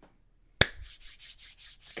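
A single sharp clap or slap, then a dry rubbing sound of hands rubbing together.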